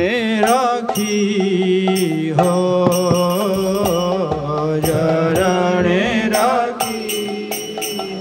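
A man singing a Bengali kirtan in long, drawn-out phrases with a wavering vibrato on the held notes, accompanied by occasional strokes on a mridanga drum.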